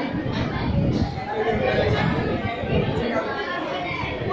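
Many people talking at once in a hall: a steady murmur of overlapping conversation with no single voice standing out.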